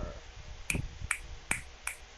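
Fingers snapping four times in an even rhythm, about two and a half snaps a second, as a show of approval.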